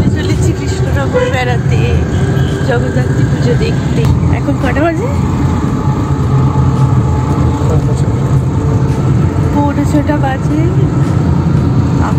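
Steady low rumble of a car's engine and tyres heard from inside the moving car, with women's voices chatting now and then over it.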